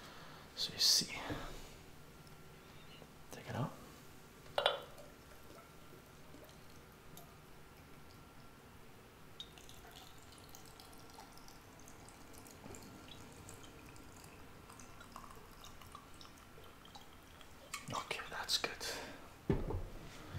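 Vodka poured slowly from a glass bottle into a jar packed with cucumber spears, giving a faint trickle and dripping of liquid. A few short knocks sound in the first five seconds and again near the end.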